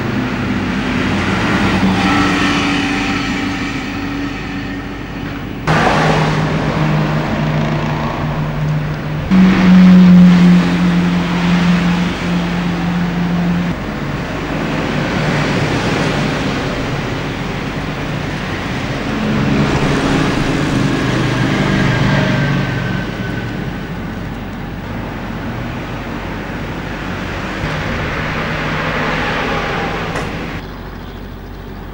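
Street traffic: motor vehicle engines running and cars passing on a city road. The sound changes abruptly a couple of times between shots, and a loud low engine hum comes in for a few seconds near the middle.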